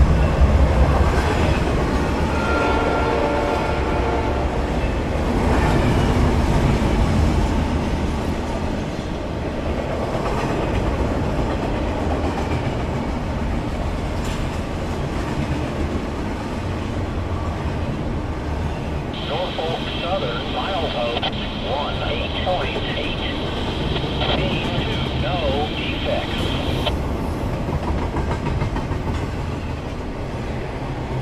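Norfolk Southern freight train passing a grade crossing, its horn trailing off in the first few seconds, then a steady rumble and clatter of double-stack container wagons on the rails. For several seconds in the second half a high steady whine rides over the rumble.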